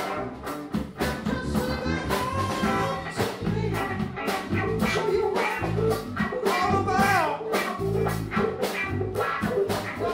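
A live rock band playing: electric guitar, bass guitar and drum kit, with a man singing lead at the microphone.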